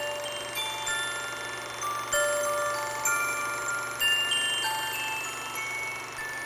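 Sparse ringing chime tones at scattered pitches, a new note about every half second, with several notes sounding over one another.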